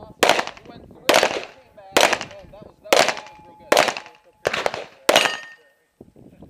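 Handgun fired seven times at a steady, deliberate pace of roughly one shot a second, each shot sharp and loud with a short echoing tail.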